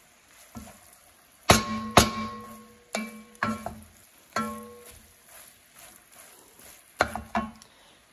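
Wooden spoon stirring thick meat sauce and knocking against the side of a white enamelled Dutch oven: about seven irregular knocks, each ringing briefly from the pot. The loudest two come about a second and a half in.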